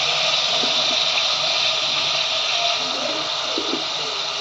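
Raw mutton pieces with ginger-garlic paste sizzling steadily in hot oil in a pot.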